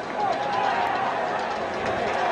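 Football stadium crowd: a steady din of many voices yelling and cheering while a play is run.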